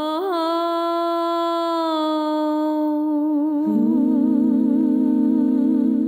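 A woman's voice humming one long held note that begins to waver slowly midway. About halfway through, a second, lower hummed note joins it in harmony.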